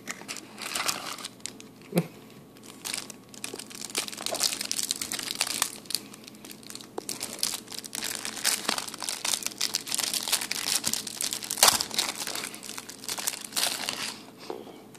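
Clear plastic wrapper on a pack of trading cards crinkling and tearing as it is peeled off by hand, in a dense run of crackles with a few sharper snaps. Shortly before, a cardboard box is handled as its flaps are opened.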